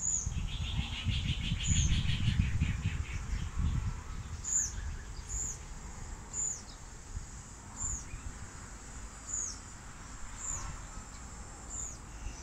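A bird calling outdoors: a string of short, high notes, each falling in pitch, repeated about once a second. A fast trill sounds over them in the first few seconds, along with a low rumble that fades out about four seconds in.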